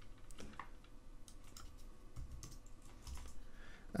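Faint, irregular tapping of computer keyboard keys as a value is typed into a field, a scattering of separate clicks.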